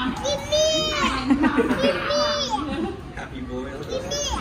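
Toddlers' excited voices: two high squeals, about half a second and two seconds in, with babble and a lower voice underneath.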